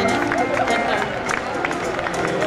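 Live band music with a man's voice singing or vocalising into a microphone, the voice wavering and bending in pitch over steady held chords.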